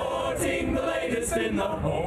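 Male a cappella choir singing in close harmony, several men's voices on a sung TV-theme jingle.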